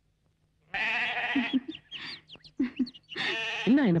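Goat bleating twice: a wavering call about a second in and another near the end, with short chirping sounds between them.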